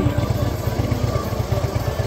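Harley-Davidson Twin Cam 103 V-twin with Vance & Hines exhaust idling, a steady low, lumpy pulse.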